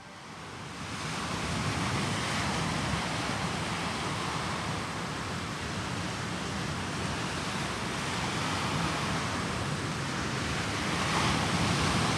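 Steady rush of ocean surf, coming up over the first second and swelling briefly near the end.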